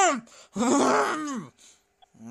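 A voice making wordless moaning and groaning sounds: a high, drawn-out moan that rises and falls, then a rougher, strained groan.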